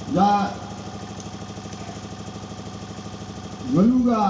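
A song playing: a voice sings a short, pitch-bending phrase at the start and another near the end, over a steady, rapidly pulsing accompaniment.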